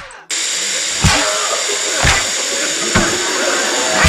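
Smoke-bomb sound effect: a brief pop as the balls hit the ground, then a steady loud hiss of smoke pouring out, with a dull thump about once a second.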